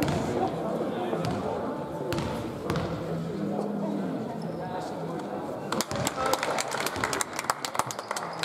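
A basketball bouncing on an indoor court floor, a few single bounces early on, then a quick run of sharp bounces in the last two seconds, echoing in a large sports hall.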